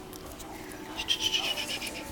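Shetland sheepdog puppy panting: a quick run of short breaths lasting about a second, starting about halfway through.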